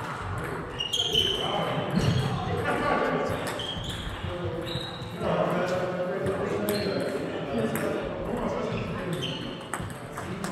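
Voices talking in a reverberant sports hall, with the repeated clicks of table tennis balls striking bats and tables.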